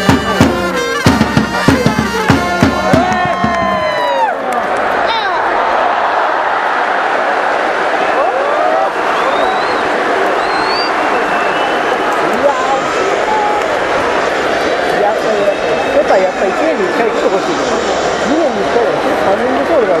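A baseball cheering section's trumpets and drums play a batter's cheer song, which ends about four seconds in on falling trumpet notes. After that comes the steady chatter and shouting of a large stadium crowd.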